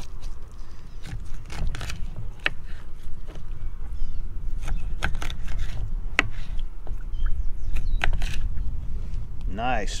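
A knife cutting fish into bait chunks on a plastic cutting board, with irregular sharp taps and scrapes as the blade hits the board, over a steady low rumble.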